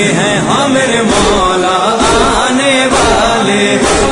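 Devotional chant in the style of a noha or manqabat: a voice sings a wavering, ornamented melody with no clear words, over a low thud about once a second.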